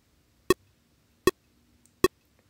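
Metronome click track counting in at 78 beats a minute during a pre-roll: short, sharp clicks evenly spaced about three-quarters of a second apart, two in the middle and a third at the very end.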